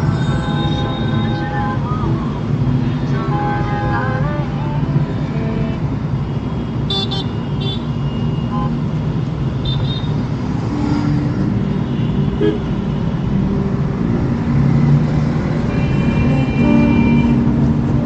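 Vehicle horns honking repeatedly in slow, dense city traffic, heard from inside a car cabin over a steady rumble of road and engine noise. One honk is a quick run of short beeps about seven seconds in, and a longer honk comes near the end.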